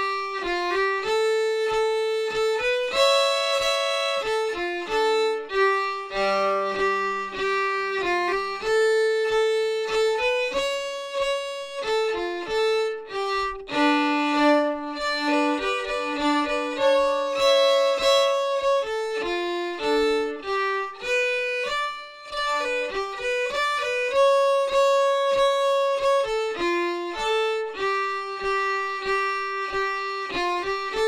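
Solo fiddle playing a slow Estonian folk tune in three-time, its bowed notes stepping up and down. It is a Jew's harp tune carried over to the fiddle, which gives it an odd-sounding scale drawn from the harp's overtones.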